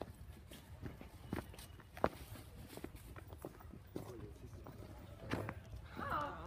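Footsteps of someone walking on a footpath: an uneven run of light taps and scuffs a few times a second, with a sharper knock about two seconds in.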